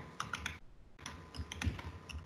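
Computer keyboard typing: a quick run of keystrokes, a short pause, then a few more keystrokes.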